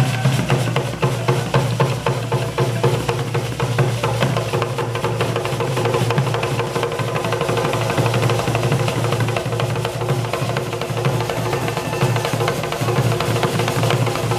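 Traditional Ugandan drum ensemble with a large log xylophone, playing a dense, continuous rhythm together.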